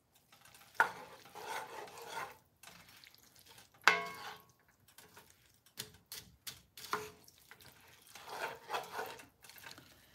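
Wooden spoon stirring and scraping a mixture of ground meat, corn and black beans around a cast-iron skillet, with a faint sizzle of the food cooking. Two sharper knocks stand out, about one and four seconds in.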